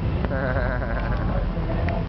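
A person's voice making a drawn-out, wavering call over a steady low rumble, with a single sharp crack about a quarter second in.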